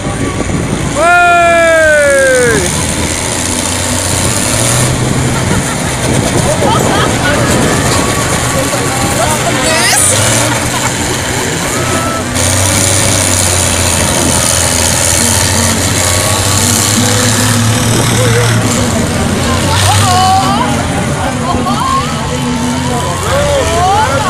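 Diesel engines of tractors and old trucks towing caravans round a dirt racetrack, running with a steady low drone. About a second in a loud tone falls in pitch over a second or so, and voices come in near the end.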